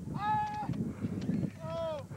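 Two drawn-out whoops from a person's voice, the first held level and the second rising and falling, over background chatter.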